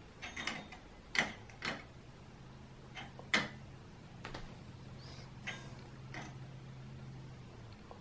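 Sharp little clicks and taps of a three-blade plastic propeller and its metal shaft being handled and set on a Du-Bro prop balancer, about eight of them at uneven intervals. A faint low hum sits beneath.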